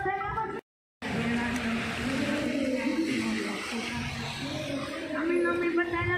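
Faint, muffled voices and music over a steady outdoor hiss, broken by a sudden drop-out to silence for about half a second near the start; clear speech begins near the end.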